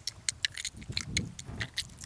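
Light, irregular metallic clicking and clinking of fishing tackle (lure, hooks and rod) as a freshly caught fish is handled at the boat.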